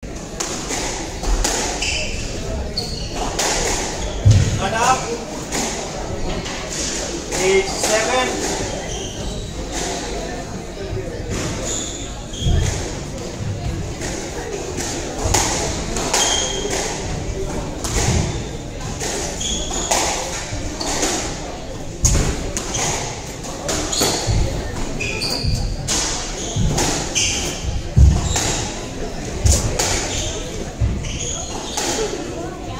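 Squash rally: the ball cracks off rackets and thuds against the court walls in an irregular run of sharp hits, with short squeaks from court shoes on the wooden floor between them.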